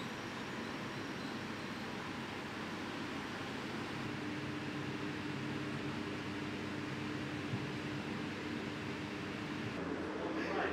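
Steady hiss of ventilation fans and machinery in an enclosed hydroponic grow room, with a steady low hum joining about four seconds in.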